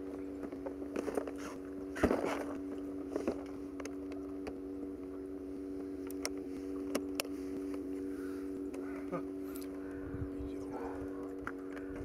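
Steady, even hum of a bass boat's motor, with scattered knocks and clicks on the boat, the loudest knock about two seconds in.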